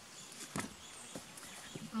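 Quiet outdoor garden ambience with a soft knock about half a second in and a fainter one a little after a second.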